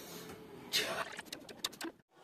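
A man blowing out sharply through pursed lips during crunches: a hissing breath about three quarters of a second in, followed by a quick run of short clicks and rustles from his body moving on the floor cloth.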